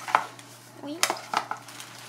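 Small white cardboard jewellery box handled among paper packaging: three sharp light clicks and taps, one near the start and two close together about a second in, with faint paper rustling between.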